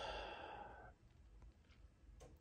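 A man's breath out, a sigh that fades away within the first second, then near silence: room tone.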